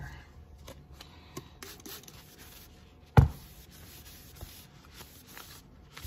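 Blue shop towel rubbed over the aluminium skin of a motorcycle muffler during wet sanding, a faint scuffing with small clicks. A single sharp knock about three seconds in.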